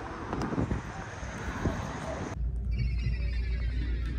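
Outdoor street noise with wind on the microphone. About two and a half seconds in it cuts abruptly to music: a steady low bass note under slowly falling high tones.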